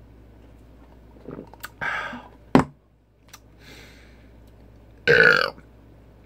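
A man burping as he drains a 24 oz can of Steel Reserve malt liquor. There is a sharp click about two and a half seconds in, and a loud half-second burp about five seconds in.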